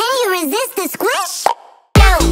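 With the beat stopped, high, squeaky cartoon voices chatter in quick rising-and-falling glides, ending in a short pop about a second and a half in, followed by a moment of near silence.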